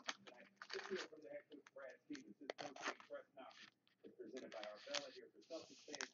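Faint rustling, scraping and small clicks of a trading card being handled and slid around in the hands, coming in short irregular bits.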